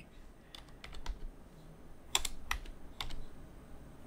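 Computer keyboard keys being typed: about half a dozen faint, separate keystrokes, unevenly spaced, as a short word is entered.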